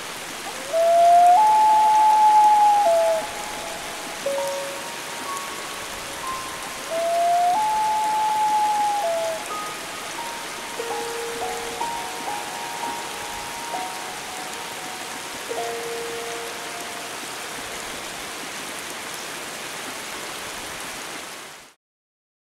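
Steady rain falling on water, with long melodic tones over it: two loud ones that glide up and then hold, followed by a run of shorter stepped notes. It all fades out just before the end.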